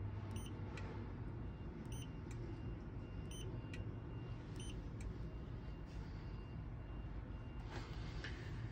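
Short, high electronic beeps repeating about once every second and a half, fainter in the second half, over a steady low hum inside the van's cabin.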